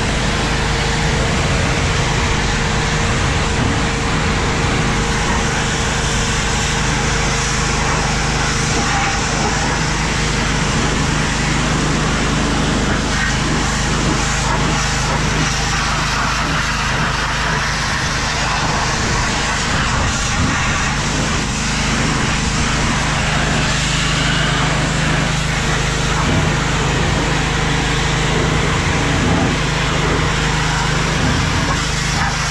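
Pressure washer running steadily: the hiss of the water jet striking a tractor's steel wheel hub and rim over the even hum of the washer's motor.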